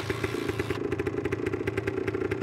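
A small motorcycle engine running steadily, a fast even putter with no revving.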